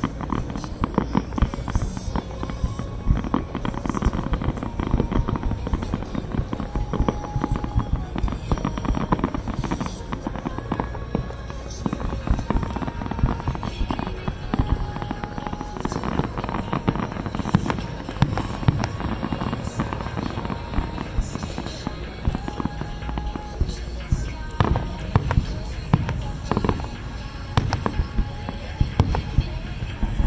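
Aerial fireworks shells bursting in quick succession throughout, a dense, continuous run of booms and crackles with frequent loud peaks.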